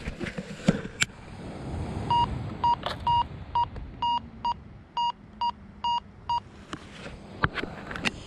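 Minelab Go-Find 66 metal detector giving a target signal: about ten short beeps of one pitch, roughly two a second, with a few pebble crunches and clicks on shingle. The display reads the target as a coin, but it turns out to be a piece of aluminium.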